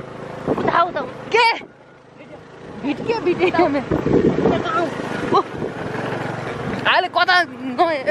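Voices talking and calling out in short bursts, with a vehicle's engine running underneath.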